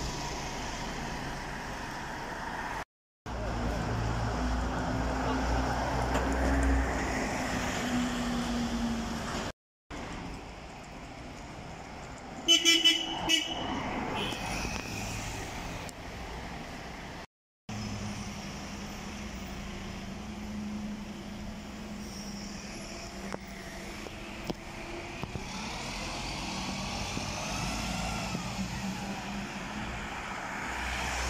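City buses running and pulling past in street traffic, with steady engine and road noise. About twelve seconds in, a vehicle horn gives a few short toots, the loudest sounds here.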